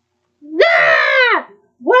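A person's loud, high-pitched wordless wail, held for about a second and falling in pitch at the end.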